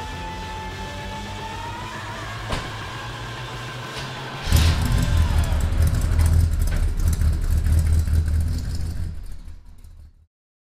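Background music, then about four and a half seconds in a Chevrolet C10 pickup's small-block V8 starts suddenly and runs with a loud, low rumble, fading out near the end.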